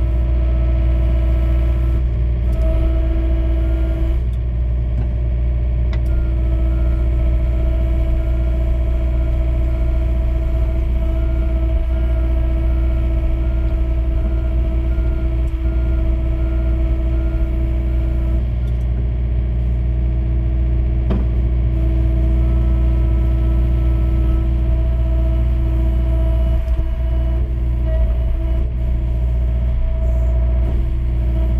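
John Deere mini excavator's diesel engine running steadily, heard from inside the closed cab, as the boom and swing are worked.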